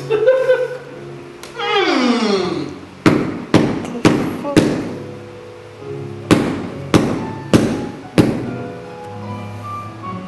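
Loud knocking, two sets of four evenly spaced knocks about two a second, over soft background music; a falling pitch glide in the music comes before the knocks.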